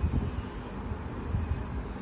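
Low, steady rumbling background noise with no distinct events.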